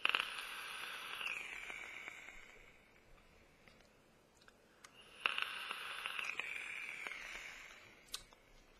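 Two long draws on an IPV3 box mod fitted with a 0.3-ohm sub-ohm atomizer and fired at about 35 watts. Each opens with a click, followed by a hiss of air pulled through the atomizer that lasts two to three seconds and slowly fades.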